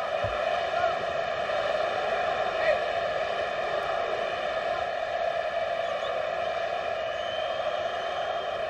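Steady stadium crowd noise at a football match: the massed sound of thousands of fans, with no single voice or event standing out.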